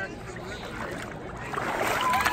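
Water sloshing and splashing as a person is dipped under and lifted back out of a pond in a full-immersion baptism, the splashing growing louder near the end as she comes up.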